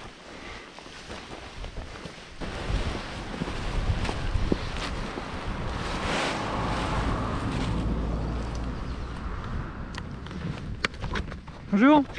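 Nylon paraglider wing and its lines rustling as the wing is gathered up and carried on foot, under a rushing rumble that swells and fades around the middle. A man's voice says a word right at the end.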